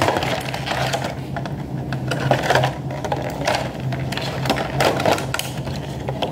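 Clear plastic compartment case and the small plastic toys inside it being handled and moved, giving a run of quick clicks and rattles of hard plastic.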